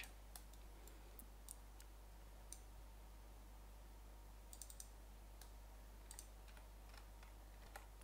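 Faint computer mouse clicks, about a dozen scattered irregularly, over near-silent room tone with a steady low hum.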